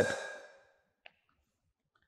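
A man's voice trails off into an exhaled breath, followed by near silence with one faint short click about a second in.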